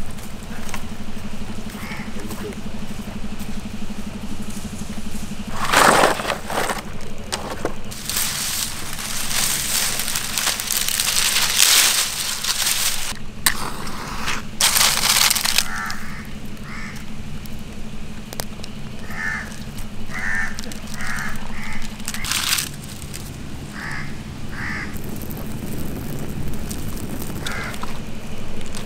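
Dry coconut palm fronds rustling and crackling in loud bursts as they are handled and set alight. Crows caw repeatedly in the second half.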